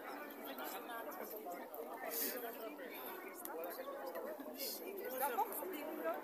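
Indistinct chatter of passing pedestrians talking, several voices overlapping.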